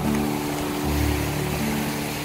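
Instrumental passage of a gentle pop song: held chords over a bass note that changes about halfway through.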